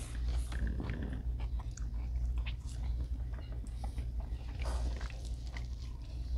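Close-up eating sounds: chewing and biting into naan and grilled meat, a scatter of small wet clicks and crunches over a low steady hum.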